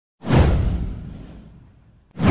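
A whoosh sound effect for an animated logo intro, starting suddenly about a quarter of a second in with a deep low rumble beneath it, then fading away over about a second and a half.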